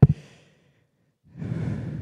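A person's sigh, a long breath out into a close handheld microphone, starting about a second in and lasting about a second.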